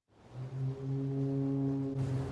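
A deep, steady horn-like tone comes in just after the start and holds, opening the soundtrack of a car commercial.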